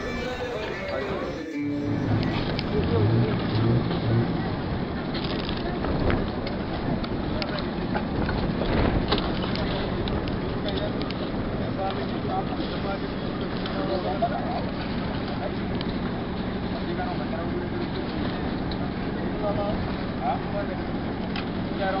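Outdoor noise with people talking and a vehicle engine running steadily underneath.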